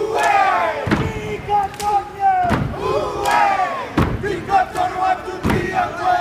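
A group of men chanting and shouting a Māori haka in unison, their voices rising and falling in forceful lines. Heavy thumps land about every second and a half, in time with the chant.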